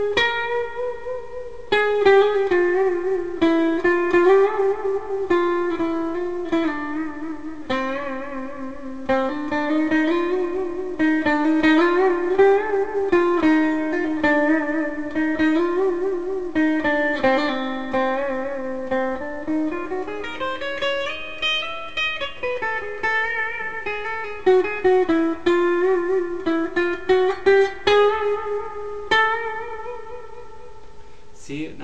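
Electric guitar playing a simple improvised single-note melody, each held note shaken with vibrato. In places the pitch glides slowly up and back down.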